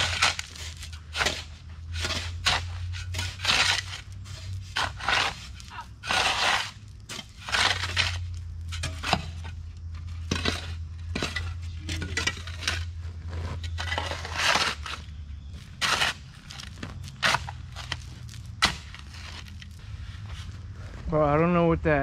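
Shovels scraping and crunching into gravelly soil and stone dust in irregular strokes, about one a second, as the dirt is dug by hand around buried conduit. A steady low hum runs underneath.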